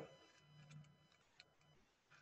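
Near silence, with a few faint clicks.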